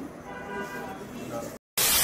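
Faint background chatter. About one and a half seconds in it cuts out completely, and a loud burst of TV-static white noise follows: an editing transition sound effect.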